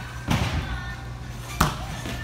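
Two thuds of a gymnast's hands and feet striking a padded gym mat during a tumbling skill, the second, sharper one being the landing, about a second and a half after the first.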